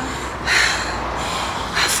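A person's sharp, noisy breath about half a second in, with another breathy burst near the end, over a steady low rumble.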